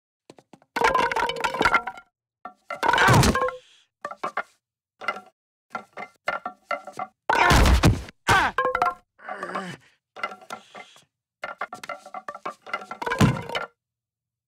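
Slapstick sound effects: wooden baseball bats spilling off a rack and clattering on a hard floor, and heavy thuds as a man falls among them, with pained grunts between. The loudest crashes come about halfway through and again near the end.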